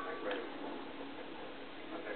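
A single toy chime note fading out at the start, then a faint soft voice sound over a quiet room.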